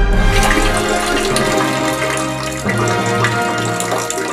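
A toilet flushing, water rushing into the bowl, over sustained held chords of music.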